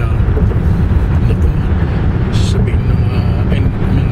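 Car cabin noise at highway speed: a steady low rumble of tyres and engine, with quiet talk in the car.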